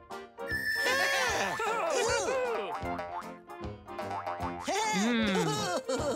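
Cartoon sound effects: a quick run of bouncy, boing-like pitch glides, each rising and falling, over light children's music.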